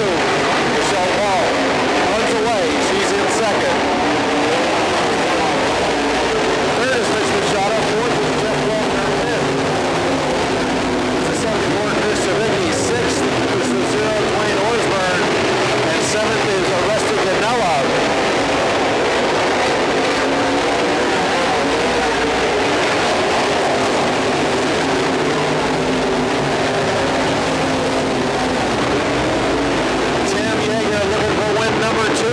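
A field of IMCA dirt modified race cars racing around a dirt oval. Several V8 engines overlap, their pitch rising and falling as the cars brake into the turns and accelerate out of them.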